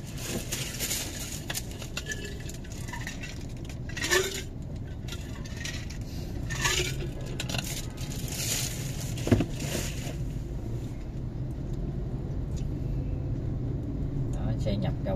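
Steady low hum inside a car's cabin with the engine idling at a standstill in traffic. Scattered short clinks and scrapes come through it, the sharpest one about nine seconds in.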